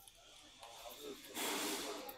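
A person's short breath out, heard as a brief hiss about one and a half seconds in, over faint low murmuring.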